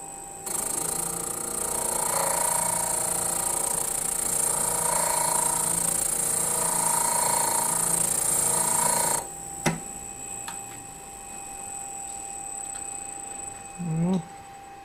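Steel cuticle nippers ground against the abrasive wheel of an ADEMS GMT II sharpening machine while the front face of the cutting edge is formed. The grinding hiss starts about half a second in and stops about 9 s in. After that the machine runs free with a steady whine, and there is a single click.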